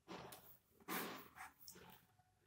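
Ballpoint pen scratching on paper: a few short, faint strokes as a word is finished and a line is underlined.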